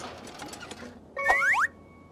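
Cartoon sound effects: a fast run of faint clicks like a ratchet, then about a second in a short, louder upward-gliding whistle over a steady tone that cuts off sharply.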